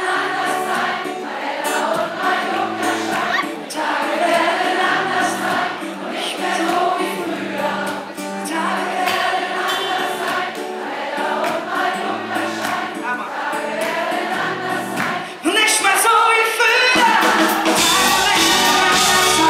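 Live pop-rock song: a male singer with acoustic guitar over a held bass line, and the band and drums coming in louder about three seconds before the end.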